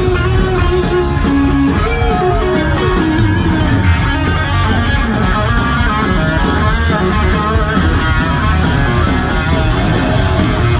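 Live punk rock band playing loud through the PA: electric guitar with notes that bend and glide in pitch, over bass and drums with steady cymbal hits.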